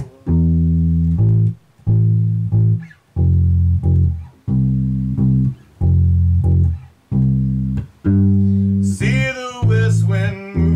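Electric bass guitar playing a slow line of held low notes, each ringing about a second with short breaks between them.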